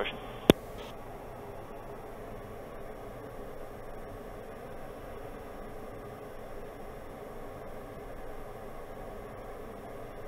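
Steady hiss of the PC-12NG's cabin noise, turboprop and airflow, heard through the headset intercom feed on final approach. A single sharp click comes about half a second in as the radio transmission ends.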